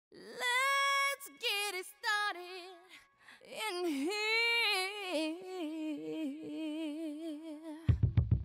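A solo high voice singing unaccompanied. It holds one note, then sings a few short notes, and after a brief gap near the middle carries a long melodic line with vibrato.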